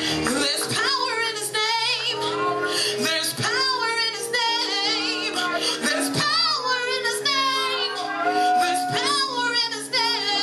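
A woman singing gospel into a handheld microphone, her notes wavering and sliding in long runs, over held keyboard chords.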